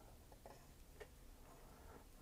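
Near silence: quiet room tone with a few faint ticks, about half a second in and again about a second in.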